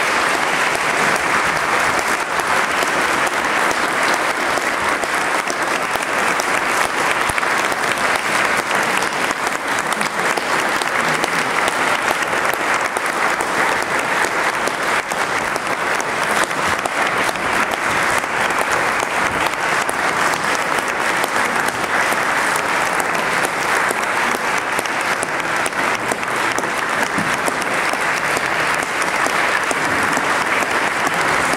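Audience applauding steadily, a dense, even clapping sustained without a break.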